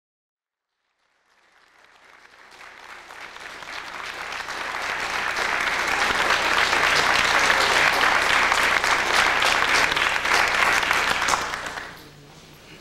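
Audience applauding: silent at first, the clapping swells over the first few seconds, holds steady, then dies away near the end.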